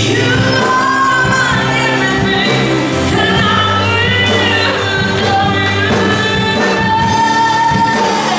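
Live worship band, with electric guitars, keyboard and drum kit, playing a praise song while voices sing long, held melody lines over a steady beat.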